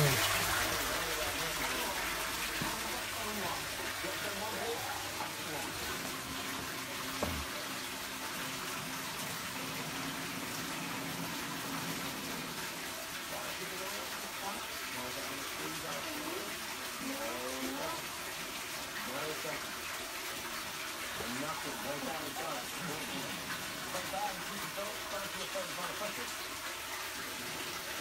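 Steady splashing of water pouring into a large aquarium as it is refilled with fresh water, with a single knock about seven seconds in.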